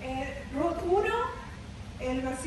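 A high-pitched voice, a short note followed by a drawn-out rise in pitch, with no words made out.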